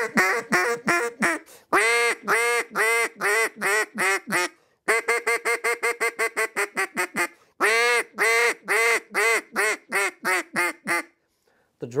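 Lodge Creek Calls "Drake Brake" duck call blown to imitate nasal hen duck quacks. It goes in four runs: slower quacks in the first, second and last runs, and a fast string of short notes, about seven a second, in the third.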